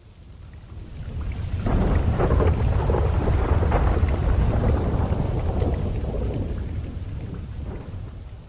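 Long roll of thunder over steady rain, swelling over the first two seconds and slowly dying away near the end.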